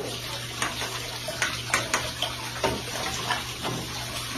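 Water trickling and splashing into the shallow pool of a reptile enclosure, over a steady low hum, with several sharp splashes or clicks scattered through.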